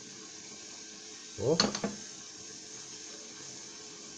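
Meat and vegetables sizzling and simmering in a tagine over a gas flame: a steady, soft hiss.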